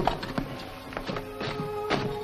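Film score music with held notes, over a handful of sharp knocks and clatters of logs and fire irons being handled in a fireplace grate. The loudest knock comes right at the start.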